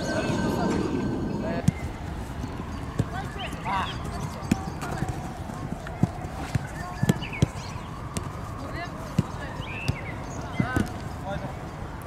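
Footballs being kicked on artificial turf: a dozen or so sharp, irregular thuds of boot on ball, with short shouts from young players in between. It opens with a long high-pitched tone that stops about a second and a half in.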